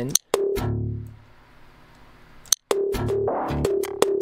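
Electronic percussion loop played through Ableton's Corpus resonator on its pipe setting and a short repitching delay, its hits turned into a metallic, pitched ringing with extra resonances. It plays for about a second, rings out and fades, then starts again just past halfway.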